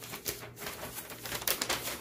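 A few short rustles and light handling noises of packaging and comic books being moved about, with no voice.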